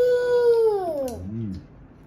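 A toddler's long, high-pitched vocal sound, held at one pitch for about a second and then falling, with a short lower sound at the end.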